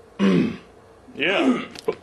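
A person's voice making two short wordless vocal sounds with rising and falling pitch, the second about a second after the first, then a sharp click near the end.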